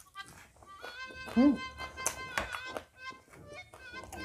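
Close-up eating sounds of someone chewing a mouthful of rice and vegetables, with a short "mm" hum of enjoyment about a second and a half in. Background music with sustained held tones plays underneath.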